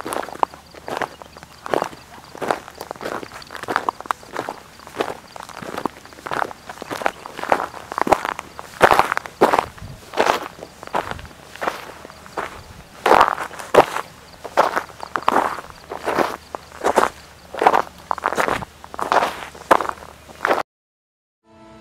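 Footsteps of people walking on dry, cracked mud crust, each step a short crunch as the crust breaks underfoot, at a steady walking pace.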